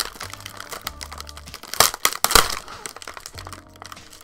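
Plastic cookie-package wrapper crinkling as it is pulled open, with two loud crackles about two seconds in.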